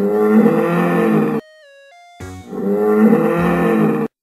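Dinosaur roar sound effect for a Spinosaurus, played twice: two long, loud roars of about a second and a half each. Between them, about halfway through, a short pause holds a faint falling run of tones.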